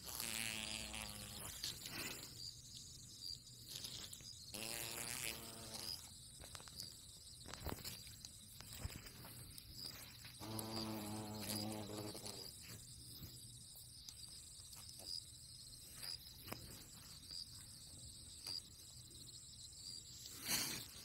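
A hornet's wings buzzing in three short bursts: at the start, about five seconds in, and around eleven seconds in. Behind them runs a steady, high insect trill with a regular pulse, and there are a few faint clicks.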